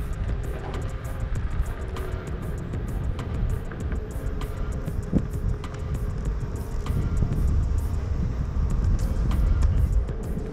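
Onewheel Pint rolling over concrete: a steady low rumble of the wheel and wind on the microphone, with a faint steady whine from the hub motor and many small ticks from the pavement.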